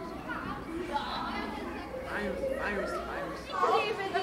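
Indistinct chatter of several people talking at once, no single voice clear, over a low hum that drops away near the end.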